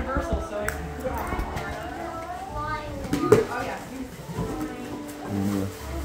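Indistinct voices of people talking, with music in the background. A short, sharp sound a little past three seconds in is the loudest moment.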